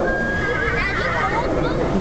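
A horse whinnying in the frontier scene's sound effects heard from the bank: a high held call that breaks into a wavering whinny, with voices mixed in.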